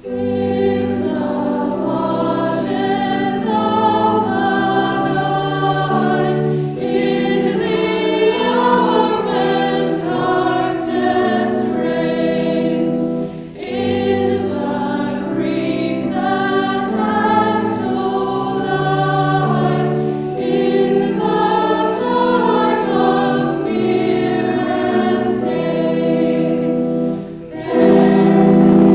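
Church choir singing in parts, with held chords and a short break in the sound about halfway through and again just before the end.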